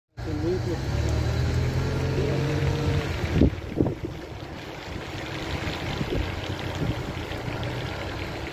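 Car engine running with a low steady hum and faint wavering voices for the first three seconds. Two sharp knocks come a little after three seconds, and an even rushing noise follows.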